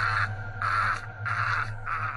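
Four short, harsh calls in a row, evenly spaced about two-thirds of a second apart, over a low steady hum.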